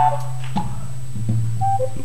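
Soft instrumental church music: a held low bass note with a few short higher keyboard notes near the end.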